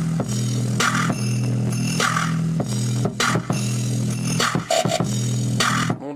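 Bass-heavy dance music with a steady, hard-hitting beat, played from a phone through a homemade TDA2003 chip amplifier (its single-chip channel) into an old restored loudspeaker. The amplifier brings out the low end well.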